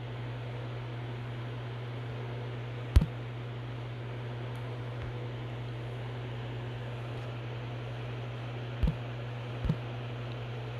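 Room tone: a steady low hum under an even hiss, broken by a sharp knock about three seconds in and two softer knocks near the end.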